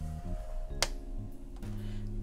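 Soft background music with low plucked-guitar notes, and a single sharp click a little under a second in.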